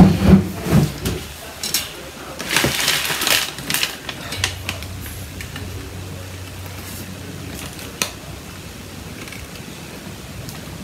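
Woven wooden splint basket creaking and rustling in crackly bursts as it is handled and turned over during the first few seconds, followed by a low steady hum.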